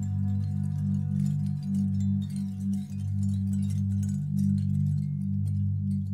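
Ambient new-age music: low sustained drone tones that swell and fade in slow waves.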